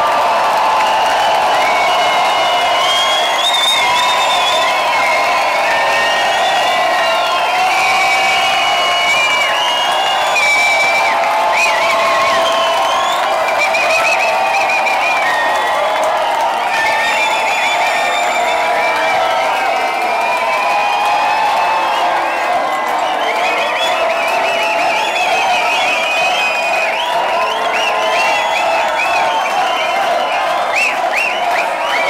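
Loud techno from a club sound system, heard thin and with little bass, with a crowd cheering and whooping over it throughout.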